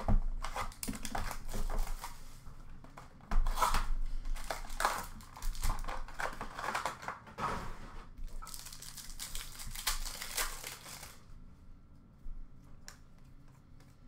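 Plastic wrapping crinkling and tearing in quick irregular crackles as hockey card boxes and packs are unwrapped, dying down to a few faint rustles near the end.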